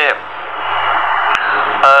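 A pause in a man's lecture. The hiss of the recording's background noise swells up during the pause over a steady low hum, with one short click a little past halfway, before the voice returns near the end.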